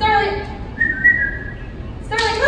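A person whistling to call a puppy to come. A short high-pitched coaxing call comes first, then a thin, high whistle of under a second that rises slightly.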